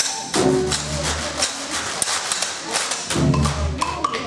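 Traditional jazz band playing an up-tempo tune, with a washboard clicking in a quick, even rhythm over held low bass notes.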